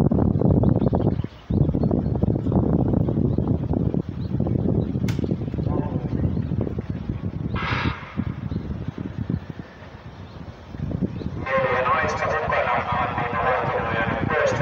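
Wind buffeting the microphone with a low rumble through most of the stretch. About two-thirds of the way in, several voices start shouting and cheering loudly as sprinters race down the track.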